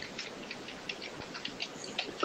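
A pause in speech: faint steady hiss with scattered soft, irregular ticks.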